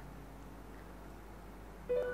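Faint, even background noise, then background music coming in just before the end with a few held, steady notes.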